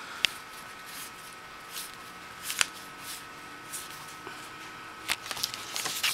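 Yu-Gi-Oh trading cards being handled: cards slid through the hand and laid down, with a few sharp card snaps spaced out over a quiet background and a faint steady high whine.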